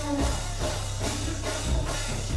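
Live band music with a drum kit and a heavy, steady bass line, kick-drum strokes landing unevenly through it, with no vocal.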